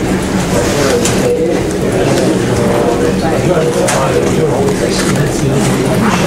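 Many people talking at once in a large room, an indistinct hubbub of overlapping voices, with a few short clicks.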